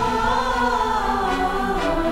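Background music of the serial's dramatic score: a sustained chord with a choir-like sound, held steady.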